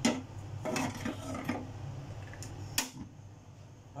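A few sharp clinks and knocks of a cooking pot being handled on a stainless-steel cooktop. The loudest comes right at the start and another near the end.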